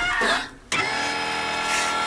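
A brief voice sound, then a steady buzzing tone with many overtones, held unchanged from under a second in.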